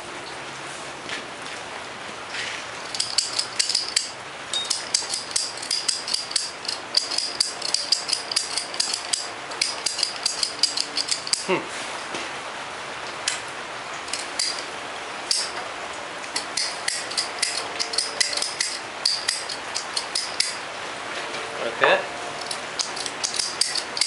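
A flint striker squeezed over and over, its flint scraping to throw sparks at the gas bubbling off a cut-open lithium polymer cell in water. It makes runs of rapid, sharp clicks with short pauses between, over a steady fizzing hiss from the cell reacting in the water.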